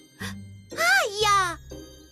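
Light children's cartoon background music with low bass notes and tinkling high tones, with a brief high-pitched cartoon voice vocalising about a second in.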